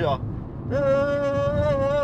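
A man's voice sings one long, steady held note starting about a second in, a vocal imitation of Arabic classical music played from a cassette, over the low rumble of a car cabin.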